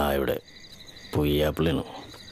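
Crickets chirping steadily in the background, a fast even pulse, while a man's voice cuts in twice, briefly: once at the very start and again about a second in.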